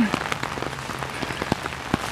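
Steady rain pattering on an umbrella overhead: a dense, even patter of drops with a couple of sharper taps in the second half.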